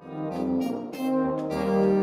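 Orchestral music led by brass holding long notes. It swells in from quiet at the start, and the notes change a few times.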